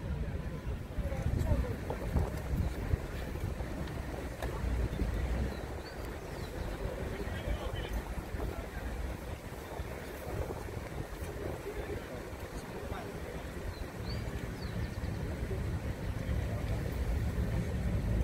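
Wind buffeting the microphone in uneven gusts, over an indistinct murmur of distant voices.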